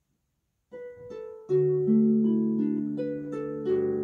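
Pedal harp starting to play: after a brief silence, a few soft plucked notes come in under a second in, then fuller chords at about a second and a half, with the notes ringing on and overlapping.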